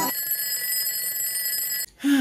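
Alarm clock ringing sound effect: a steady, high ring that lasts nearly two seconds and cuts off suddenly just before the end.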